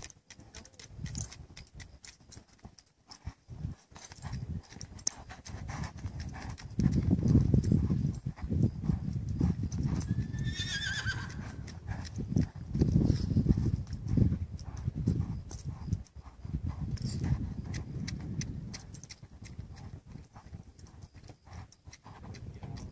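A young colt's hooves thudding dully in deep arena sand as it lopes in circles on a lunge line, louder through the middle stretch. About halfway through a horse whinnies once, briefly.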